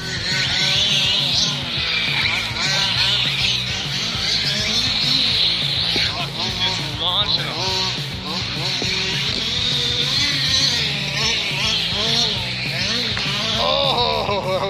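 Rock music playing over the high whine of radio-controlled cars' motors, rising and falling in pitch as they rev and drive.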